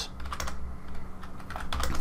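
Computer keyboard keystrokes: one click right at the start, then a quick run of key presses near the end, as a forward slash, a number and Enter are typed. A low steady hum runs underneath.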